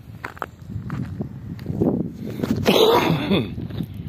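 Footsteps on dry, stony ground while walking, as a run of short crunches, with a loud breathy burst from the walker's own mouth and nose, like a sneeze or a heavy exhale, about three seconds in.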